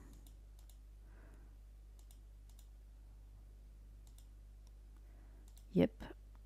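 Faint computer mouse clicks, scattered irregularly, over a low steady hum.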